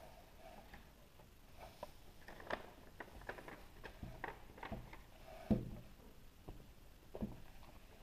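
Light plastic taps and clicks as a toy horse and doll are handled and set on a tabletop, with one louder knock about five and a half seconds in.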